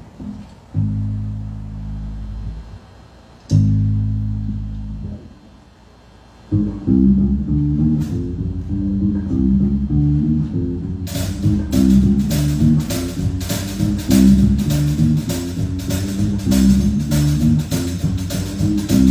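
Bass guitar sounds two long low notes, then starts a walking bass line about six seconds in; a drum kit joins about eleven seconds in with a steady beat of hi-hat or cymbal strokes.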